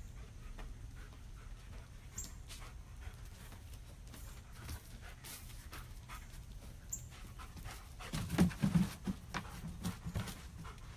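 A dog panting, with a steady low hum behind it; the breaths grow louder about eight seconds in.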